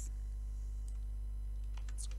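A few faint computer keyboard key clicks, one about a second in and a quick cluster near the end, over a steady low electrical hum.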